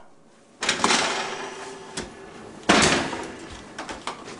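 Two sudden clattering knocks, each fading out over about a second, with a sharp click between them and a few small clicks after.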